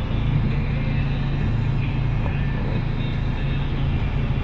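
Steady car cabin noise: the engine running with a low, even hum under a wide, even rush of noise.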